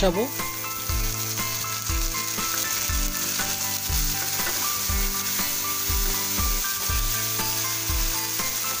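Radish sticks frying in hot oil in a kadai, sizzling steadily as onion paste is poured in and stirred through with a spatula.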